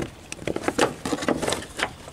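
Plastic cover and clips of a car's engine-bay fuse box clicking and scraping as the cover is worked loose, in a quick, irregular series of clicks.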